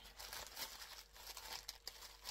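Plastic bubble wrap crinkling with many small, irregular crackles as a wrapped parcel is handled.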